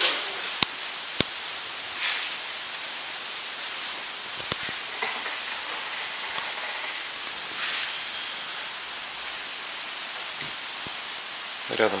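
Steady hiss of rain falling on a cellular polycarbonate roof, heard from inside the enclosure, with a few sharp clicks, two in the first second or so and one about four and a half seconds in.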